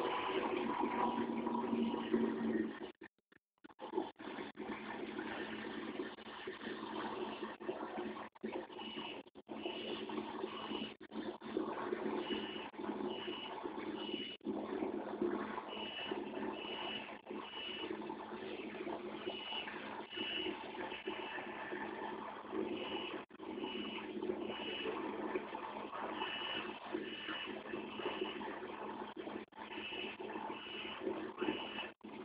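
Steady outdoor rumble of idling emergency vehicles, with runs of a short high beep repeating a little under twice a second from about the middle on. The sound cuts out for about a second a few seconds in.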